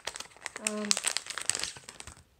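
Plastic packaging crinkling in the hands as an accessory is unwrapped, a quick, dense run of crackles.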